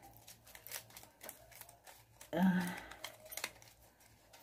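Paper rustling and crinkling with scattered soft clicks as fingers work a small sprig out of a paper flower. A short murmur of voice comes about two and a half seconds in.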